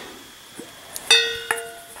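A stainless steel bowl clinks about a second in and rings briefly with a bell-like tone, and a second light knock follows half a second later.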